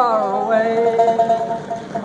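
A man singing a ballad, holding one long note that bends at the start and fades a little toward the end, with a banjo played along.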